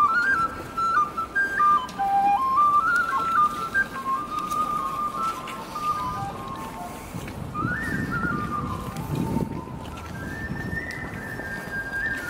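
A busker playing a quick, lilting melody on a tin whistle, one clear high line of rapidly stepping notes. After about six seconds the whistle is fainter and low street noise comes up beneath it.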